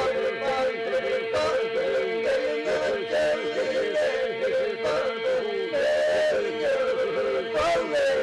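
A group of men singing Albanian iso-polyphonic folk song: a steady held drone under leading voices that bend and break in yodel-like ornaments.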